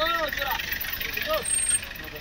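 Voices of people calling out, rising and falling in pitch, over a steady outdoor background, with a brief high-pitched tone near the end.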